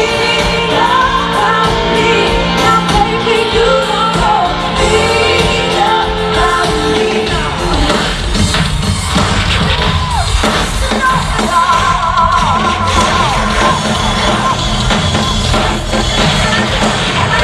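A live pop-rock band playing loudly through a concert PA with a woman's amplified lead vocal. The sung melody is clearest in the first half, with a steady drum and bass beat under it throughout.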